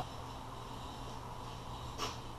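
Quiet, steady kitchen room tone with a low hum.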